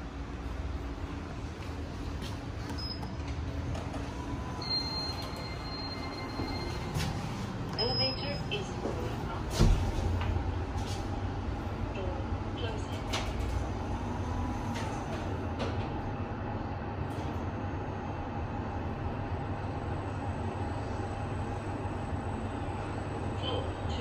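Schindler 5000 machine-room-less passenger lift: a few short high beeps, then a sharp thump about ten seconds in, after which the car travels up with a steady hum and a faint motor whine.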